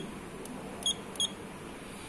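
Three short beeps from the Juki LK-1900A bartack machine's operation panel as its keys are pressed, entering a pattern number. A steady low hum runs underneath.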